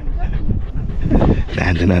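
Shiba Inu dog making small sounds close by while being petted under the chin, with a man's low voice near the end.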